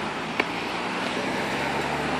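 Steady rushing outdoor background noise with a low hum underneath, slowly growing louder, and a single short click about half a second in.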